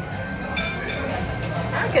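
Background music with a few light clinks of a metal spoon against a glass dessert cup.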